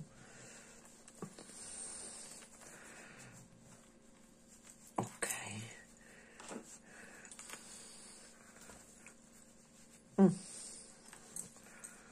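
Soft rustling of polyester fiberfill stuffing being handled and pushed into a crocheted acrylic piece, with a couple of short louder sounds about five and ten seconds in, over a faint steady hum.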